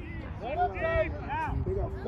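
Several voices calling out and talking, overlapping one another, over a steady low rumble.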